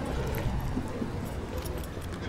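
Rummaging through a handbag for money: a few faint clinks and rustles over a steady low background hum.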